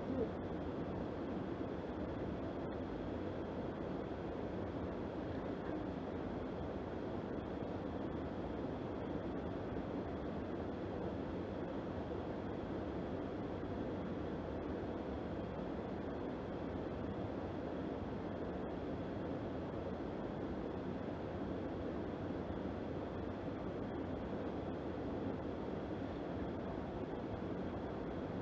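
Steady rushing outdoor background noise, even throughout, with no distinct events.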